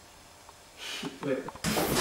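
A young man's voice saying "Wait" and then starting to talk, after a quiet first second of room tone.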